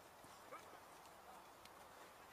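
Near silence on an artificial-turf football pitch: two faint knocks of the ball being played, about half a second in and again past the middle, with a faint distant voice near the first.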